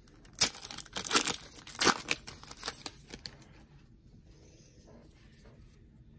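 Foil trading-card pack (2023 Panini Rookies & Stars football) torn open by hand: several short crinkling tears of the wrapper in the first three seconds.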